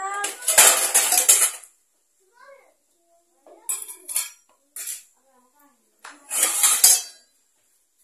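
Chapati dough being rolled out with a rolling pin on a small wooden board: clattering bursts of about a second each, four times, with quieter gaps between.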